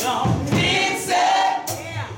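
Mixed gospel choir of men's and women's voices singing, with a dip in loudness in the second half.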